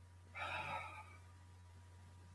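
A man's short, breathy sigh, starting about a third of a second in and lasting well under a second.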